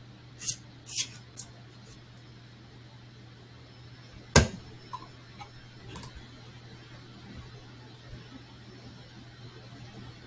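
A few sharp clicks in the first second and a half, one louder knock about four seconds in, then a few faint ticks, over a steady low electrical hum.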